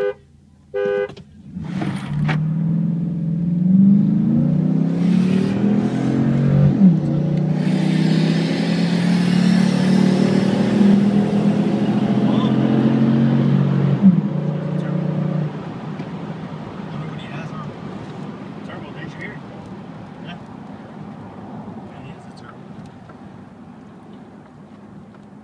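Two short car-horn honks, then a 2012 Ram's 5.7-litre Hemi V8 with a cold air intake launching at full throttle, heard from inside the cab. Its pitch climbs through the gears and drops back at upshifts about 7 and 14 seconds in. About 15 seconds in the throttle lifts and the engine eases off, growing steadily quieter.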